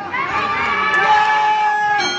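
Fight crowd shouting and cheering, with several long held calls overlapping.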